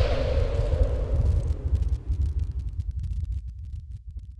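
Cinematic title sound effect: a deep rumbling boom that slowly fades away, with faint crackle over it.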